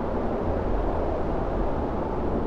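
A steady low rumbling noise that holds at an even level, heaviest in the low end, with no distinct tones or strikes.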